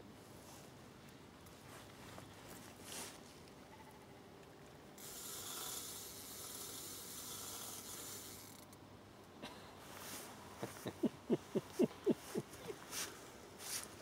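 Bait-runner fishing reel working as a hooked barbel is played on a bent rod: a faint whirring hiss from about five to nine seconds in, then a quick run of sharp ratchet clicks.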